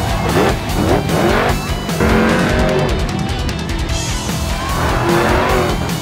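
Monster truck's supercharged V8 revving in repeated rising and falling bursts, heard over loud guitar-driven rock music.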